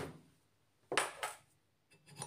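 A steel screwdriver put down on a stone worktop: one short, sharp clatter about a second in that dies away within half a second.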